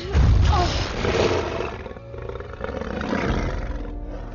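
A giant dragon's roar, a designed creature sound effect. It breaks in loudly just after the start, with a falling cry, then swells again about a second in and near the end, over an orchestral film score.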